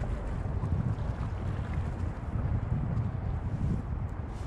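Wind buffeting the microphone: a gusting low rumble that rises and falls unevenly.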